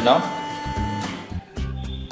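Background guitar music, with a steady whine from the robot's water pump motor that cuts off about a second in as the pump is switched off.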